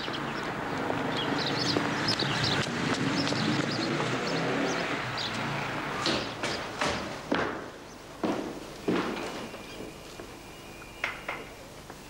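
Street ambience with a steady hum of traffic, then footsteps on hard stairs: separate sharp steps and knocks, irregularly spaced, from about halfway through.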